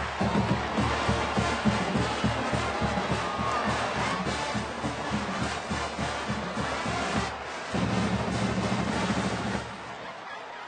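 Marching band in the stands playing a brass tune over a steady drum beat, with a brief break about three-quarters of the way through.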